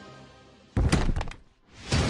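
Trailer sound effect: a sudden heavy impact hit with a few quick follow-up strikes, about three-quarters of a second in, dying away quickly. Near the end a swelling rush rises into loud music.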